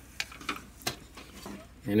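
A few light clicks and scrapes as a small 12-volt sealed lead-acid (AGM) battery is handled and lifted out of a plastic UPS housing, the sharpest click just under a second in.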